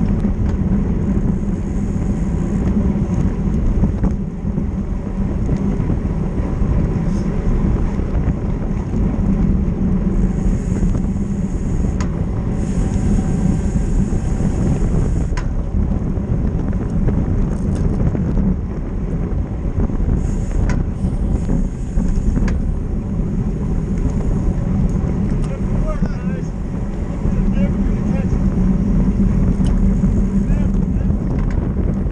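Wind rushing over a bicycle-mounted action camera's microphone at racing speed, about 45 km/h, a loud steady rumble mixed with road and tyre noise. A few sharp clicks come through now and then.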